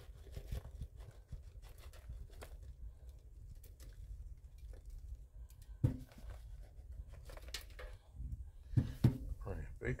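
Rustling and crinkling of handling as baking soda is poured from its box into a foil-lined mug, with scattered small clicks. Two sharp knocks come about six and nine seconds in.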